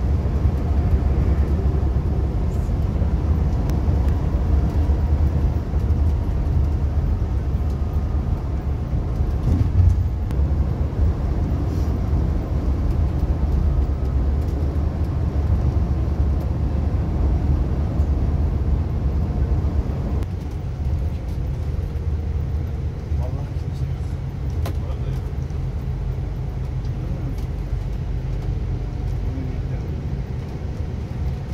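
Steady low drone of a Neoplan Tourliner coach's diesel engine and road rumble, heard from inside the cabin at highway speed. It eases a little about two-thirds of the way through as the coach slows.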